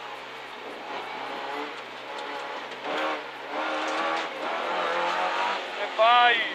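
Engine of a Renault Clio N3 rally car heard from inside the cabin: running lower and steadier for the first two to three seconds, then revving up with rising pitch from about three seconds in as the car accelerates.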